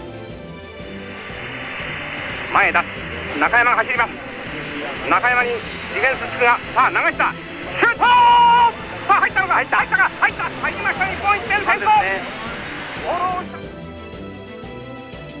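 Match broadcast audio of a football game: crowd noise with a loud, excited voice shouting in short bursts and one long held call about eight seconds in, laid over steady background music.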